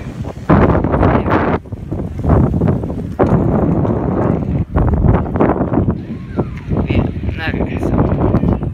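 Wind buffeting the phone's microphone: loud, low rumbling gusts that come and go, with a brief lull about one and a half seconds in.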